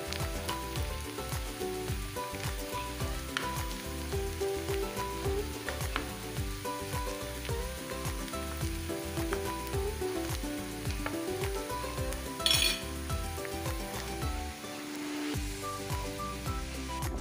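Sliced onions sizzling as they fry in oil in a nonstick pan, stirred with a metal spoon that scrapes and clicks against the pan again and again.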